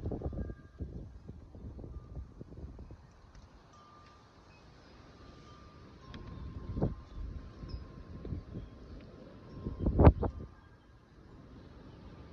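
Wind gusting over the microphone in irregular low rushes, the strongest about ten seconds in.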